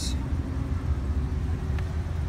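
Low, steady rumble of a 6.2-litre V8 engine idling, heard from beside the driver's door.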